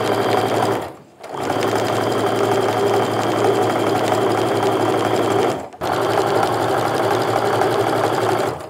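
Baby Lock sewing machine stitching a long straight quarter-inch seam joining quilt fabric strips, running at a steady speed. It stops briefly twice, about a second in and again just before six seconds, then carries on.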